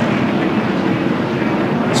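NASCAR Winston Cup stock cars' V8 engines running steadily at caution pace, a continuous even drone.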